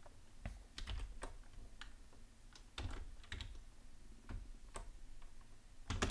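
Computer keyboard keystrokes: about ten faint, irregularly spaced key clicks with short pauses between them.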